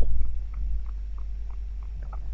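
A pause in the reading: a steady low background hum with a few faint, short ticks.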